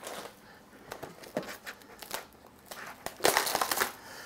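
Plastic wrapping on a packaged tray of mushrooms crinkling and rustling as it is lifted out of a basket and handled, in scattered crackles with a louder run of crinkling near the end.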